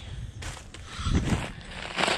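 Soft rustling footsteps in dry fallen leaves, a little louder about a second in.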